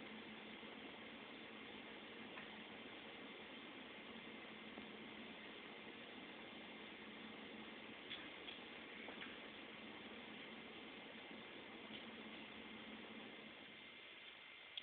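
Near silence: faint steady room hiss with a low hum, and a few faint ticks a little past the middle.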